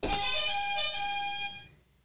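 A short electronic musical sting: a held chord of bright tones that starts suddenly, with a couple of notes changing partway, and fades out after about a second and a half.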